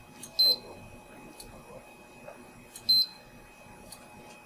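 Two short high beeps from a digital multimeter's continuity beeper, about two and a half seconds apart, signalling that the switched output is closing a circuit. A few faint clicks come between them.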